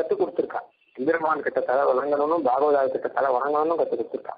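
Speech only: a man talking in Tamil, giving a religious discourse, with a short pause just before a second in. The recording sounds narrow and telephone-like.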